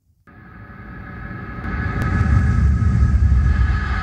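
A steady low rumble with a sustained hum of higher tones above it, swelling in over the first two seconds and then holding level.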